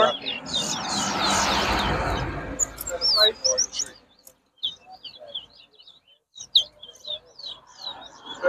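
Caged towa-towa (chestnut-bellied seed finch) singing repeated short, quick, high warbled phrases, pausing briefly about halfway through before singing again. A broad rumbling noise covers the first few seconds.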